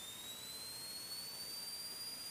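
Faint high-pitched whine in the cockpit intercom audio that rises in pitch and then levels off, tracking the Commander 112's engine as it comes up to takeoff power at the start of the takeoff roll.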